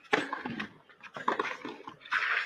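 A tennis rally: racket strikes on the ball, each with a player's short, sharp grunt of effort. There are two shots, the first just after the start and the second about a second later.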